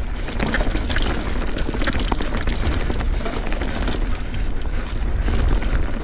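Mountain bike, a Whyte S150 full-suspension bike, descending rocky singletrack: tyres crunching over stones and the bike rattling, with a steady run of small clicks and knocks over a heavy wind rumble on the microphone.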